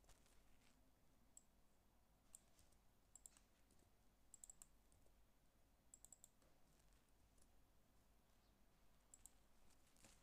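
Faint computer keyboard typing: a handful of scattered keystroke clicks, alone or in small groups of two or three, with near silence between.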